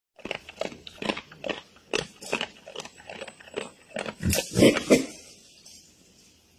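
Wild boar chewing and crunching food, a sharp crunch about every half second, loudest just before the chewing trails off near the end.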